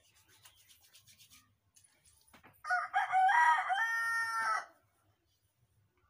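A rooster crowing once, a loud call of about two seconds in several stepped parts, starting near the middle. Before it, faint rubbing of oiled palms.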